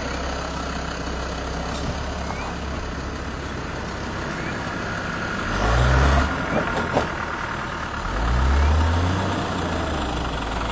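Land Rover Discovery engine running at low revs while crawling over rough off-road ground, revving up twice, about halfway through and again near the end. A couple of sharp knocks come between the two revs.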